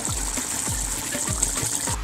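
Barbecue sauce simmering around fried chicken wings in a pot: a steady sizzle, with thick bubbles popping about three times a second.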